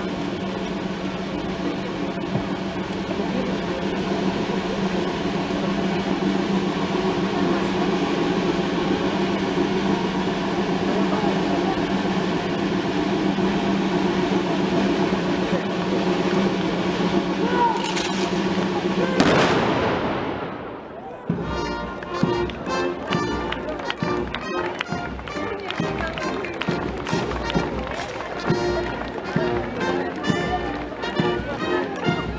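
Military brass band music playing. About two-thirds in there are a couple of sharp clacks; after a brief dip, a march with a steady beat begins.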